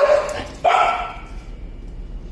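A dog barks once, a high bark about two-thirds of a second in that fades away over the following second.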